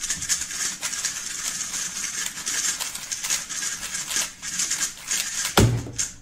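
Rapid plastic clicking and rattling of a 3x3 speedcube being turned at speed through a solve of about five and a half seconds. Near the end a single sharp slap as the hands come down on the timer pads to stop the timer.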